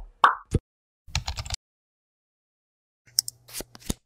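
Logo-animation sound effects: a short plop with a quick rising swoop at the start, a brief burst about a second in, then a few sharp clicks near the end, with silence between.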